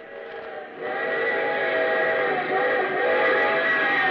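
Steam locomotive whistle sound effect: a chord of several tones that swells in about a second in, sags and bends in pitch around the middle, then holds steady.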